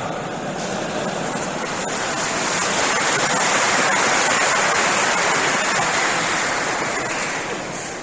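Large audience applauding, swelling towards the middle and then fading away.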